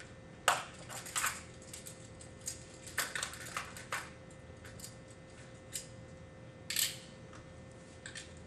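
Metal handcuffs clicking and jingling as a cuff is ratcheted closed on a wrist: several short bursts of sharp clicks, the loudest about half a second in.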